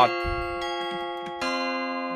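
Omnisphere software-synth chords playing back from an FL Studio piano roll: a held chord, then a new chord with a lower bass note coming in about one and a half seconds in.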